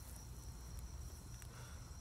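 Insects trilling faintly in one steady, high-pitched, unbroken tone, over a low rumble.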